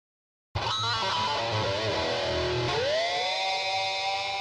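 Distorted electric guitar intro music starting suddenly about half a second in: a quick run of notes, then a sliding bend up into a held chord.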